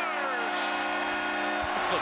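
Arena goal horn sounding a steady chord of several tones over crowd noise, marking a goal just scored; it cuts off near the end.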